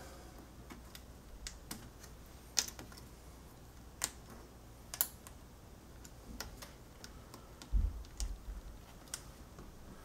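Small, sharp plastic clicks and taps, about a dozen at irregular intervals, from fingers working a flat ribbon cable into its flip-tab connector inside an open laptop, with a duller low knock about eight seconds in.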